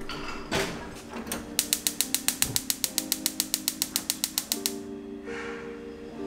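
Gas hob's spark igniter clicking rapidly, about ten clicks a second for some three seconds, as the burner is lit. A single knock comes shortly before, over soft background music.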